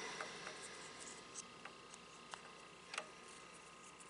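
Faint, scattered clicks and small scrapes of multimeter probe tips being pressed against the two pins of an automotive temperature sensor's connector, over quiet room tone.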